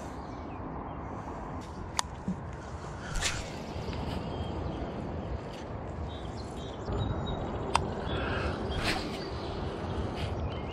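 An angler casting a spinning rod: a few sharp clicks and brief swishes over a steady outdoor rush, from an overhand cast that went wrong.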